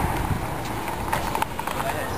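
Indistinct voices of people talking, with footsteps on pavement and a few short clicks.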